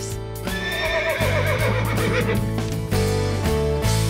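A short music sting, with a horse whinnying over held chords from about half a second in. Scattered short hits follow, and a new held chord starts near the end.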